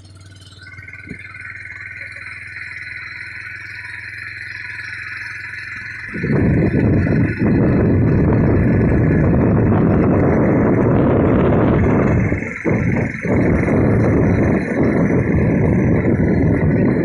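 Travel noise from a moving vehicle on a mountain road: a steady low engine hum and a high steady whine. About six seconds in, a loud rushing noise of wind and road hits the microphone and carries on, dipping briefly a couple of times.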